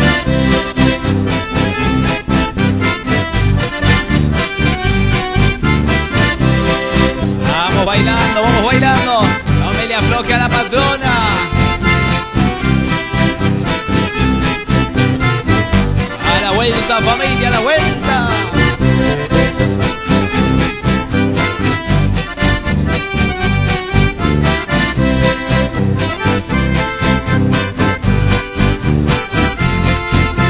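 Accordion-led Argentine country waltz (valseado campero) played by a small folk ensemble, with a steady dance beat.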